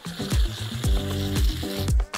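An aerosol can of whipped cream hissing as cream is sprayed onto a donut, over background music with a steady beat.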